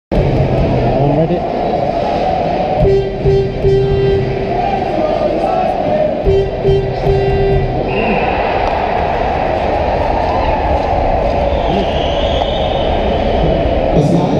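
Music over an ice rink's PA system on top of a steady crowd din, with two short phrases of repeated notes a few seconds apart. About halfway through, the crowd noise swells.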